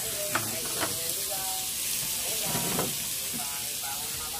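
Slices of pork belly sizzling on a tabletop grill pan: a steady frying hiss, with a few light clicks.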